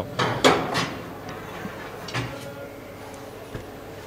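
Quiet room tone broken by a few short knocks, the loudest about half a second in, with fainter ones around two seconds and near the end.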